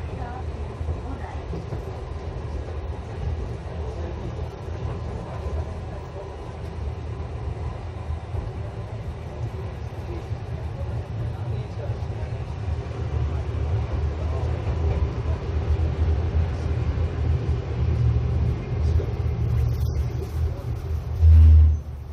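Toden 7000-series tram car 7001 running along its track, a steady low rumble of motors and wheels heard from inside the car that grows a little louder in the second half. A brief, loud low thump comes near the end.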